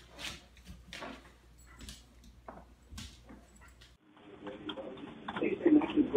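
A dog moving about on a tiled floor while dragging a towel: faint, scattered clicks and scuffs, a few a second. Near the end this gives way to a louder room with voices.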